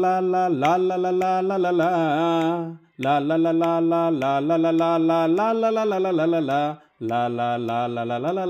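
A singer voicing a wordless 'la la la' melody of held, stepping notes, in three phrases of about three seconds each broken by two short silences.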